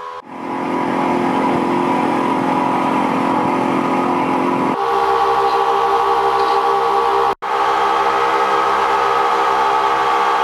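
Rescue diving vessel's engine running steadily under way, a steady drone over rushing water. Its pitch shifts abruptly about five seconds in, and the sound cuts out for an instant at about seven and a half seconds.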